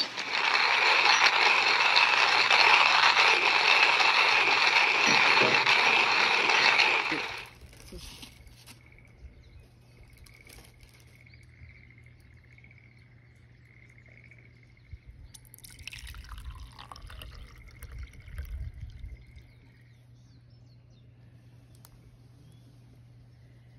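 Hand-cranked coffee grinder grinding coffee beans, a steady rasping grind that stops about seven seconds in.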